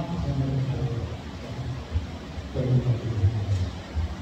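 Speech: a man talking in a low voice, his words running on in short phrases.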